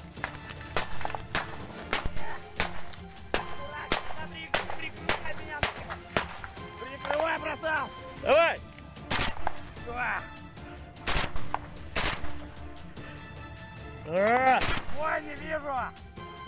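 Close-range small-arms gunfire in a firefight. Rapid shots come thick for the first several seconds, then thin out to single loud reports spaced a second or more apart.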